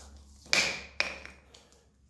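Two sharp clacks about half a second apart, the first louder and followed by a short ring: an old jump rope's handle dropped and bouncing on a concrete floor.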